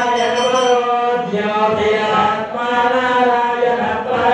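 Chanting of Hindu puja mantras during a kumkuma archana: a steady, sung recitation on long held pitches with no breaks.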